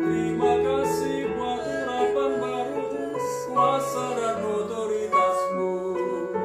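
Korg digital piano playing slow sustained chords while a man sings a worship song over it.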